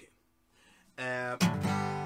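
Acoustic guitar chords: one strummed about a second in and a louder one just after it, both left ringing.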